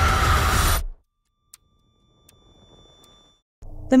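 Loud, dark intro soundtrack with a deep rumble and held tones that cuts off abruptly about a second in. Near silence follows, broken by one faint click, and a low hum comes in just before the end.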